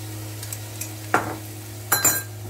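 Onion, garlic and ginger frying in coconut oil in a stainless steel pan, a faint steady sizzle, with a short sound about a second in and a sharp clink just before the end.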